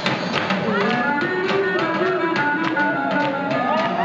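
Swing jazz played by a band: a melody line that slides and wavers up and down over a steady percussive beat.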